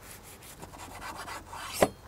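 Large knife sawing through a toasted-bread sandwich, a few rasping strokes through the crust, then a sharp knock near the end as the blade meets the wooden cutting board.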